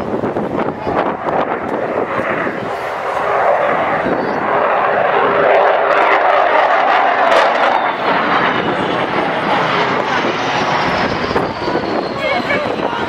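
An Avro Vulcan's four Rolls-Royce Olympus turbojets as the delta-wing bomber flies past low: a dense jet noise that grows louder to a peak midway through. Near the end a faint high whine falls in pitch as the aircraft passes.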